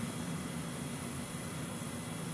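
Steady hiss of background noise with no distinct event in it.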